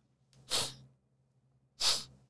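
Two short, breathy sounds from a woman, about a second and a half apart: sharp unvoiced exhales or hisses, with no voiced speech.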